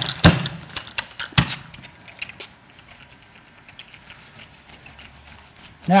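Carpet-seaming tools being handled at the seam: a few sharp knocks and clicks in the first second and a half, then scattered faint ticks.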